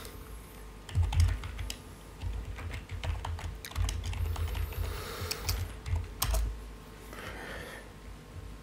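Typing on a computer keyboard: irregular runs of key clicks with dull low thumps, dying down near the end.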